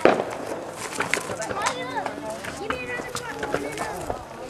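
Fireworks going off: a sharp bang at the start, followed by scattered pops and crackles, with people calling out in the background.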